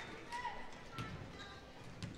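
Faint basketball-gym ambience: a low murmur of crowd voices in a large hall with a few light knocks from play on the court, the sharpest about a second in.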